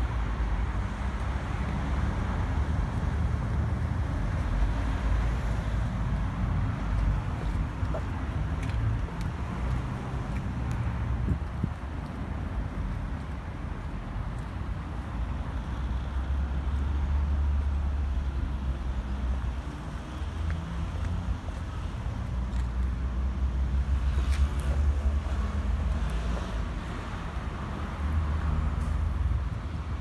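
Outdoor background noise: a low, fluctuating rumble of wind buffeting the microphone, with road traffic beyond, swelling louder in a few stretches.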